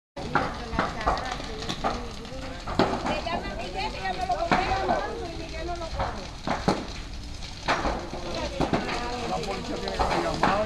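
A building burning, with sharp irregular cracks and pops about once a second, under the voices of people talking nearby.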